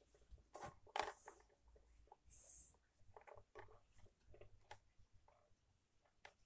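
Faint plastic clicks and knocks as the temperature control knob is fitted onto a clothes iron's plastic housing, the two sharpest about a second in, with a brief hiss a little past two seconds and lighter ticks after.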